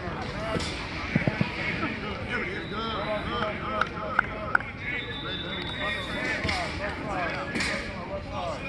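Players and coaches calling out and talking across a football practice field. Several short, sharp smacks stand out, clustered about a second in and again around four seconds in.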